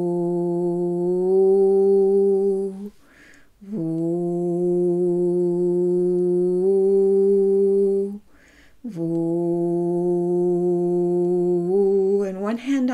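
A woman humming a low 'voo' on one steady pitch: three long held tones of several seconds each, with a short in-breath between them. It is the 'voo' hum that she says does something special to the vagus nerve.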